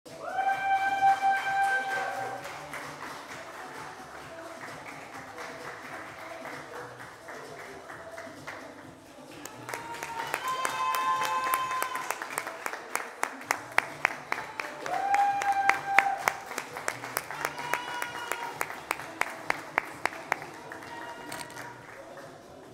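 Music with long held notes, joined about ten seconds in by a group of people clapping steadily.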